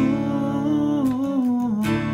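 Acoustic guitar strummed in a slow song intro, with a few strokes across the strings ringing on, and a man humming the melody over it with his mouth closed.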